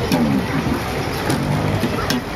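Electric bass guitar playing a funk line, low notes moving in pitch with a few sharp plucked clicks, over a steady wash of noise.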